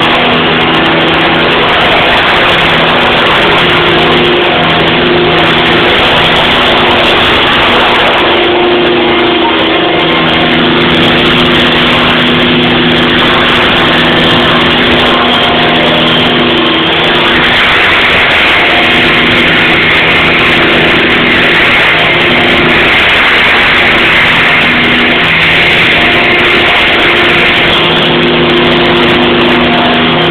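Electric T-REX 700 radio-controlled helicopter running loudly: a steady hum from its electric motor and rotor with a heavy rush of blade noise, its pitch shifting slightly as it flies.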